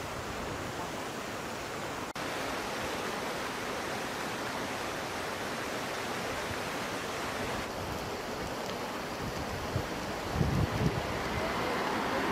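Steady outdoor rushing noise of wind on the microphone, its texture shifting a little at about two and eight seconds in, with a few low buffets of wind around ten seconds in.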